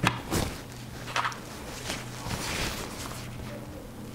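Cotton quilting fabric being handled and smoothed by hand on a table: a few soft knocks and taps in the first second or so, then a longer rustle of cloth around the middle, over a faint steady low hum.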